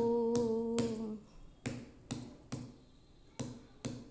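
A woman's sung note, held steady for about a second, then sharp clicks keeping the beat with no voice, in groups of three a little over two a second.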